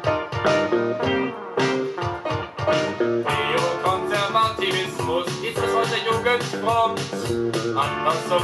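A vinyl record playing on a Fisher Studio Standard MT-6221 turntable: guitar music with a quick run of plucked notes. From about three seconds in, gliding, wavering notes join the plucking.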